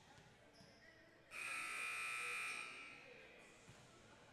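A buzzing tone lasting about a second and a half, which begins a little over a second in and fades away, over faint background noise.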